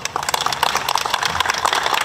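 Audience applauding with steady, dense clapping.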